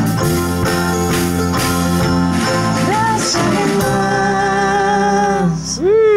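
Acoustic folk band playing an instrumental passage: strummed acoustic guitar, mandolin, bass guitar and drums keeping a steady beat. About four seconds in the drums drop out and held notes ring on, with a note sliding up and back down near the end.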